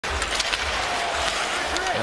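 Hockey arena crowd noise on a TV broadcast: a steady crowd hum with a few light clicks from the ice, and a commentator's voice coming in near the end.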